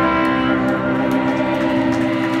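Electric guitars playing long, sustained, ringing notes.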